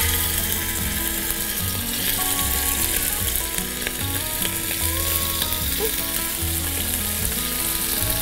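Pieces of Burmese python meat sizzling steadily in hot olive oil in a frying pan as they are laid in and moved about.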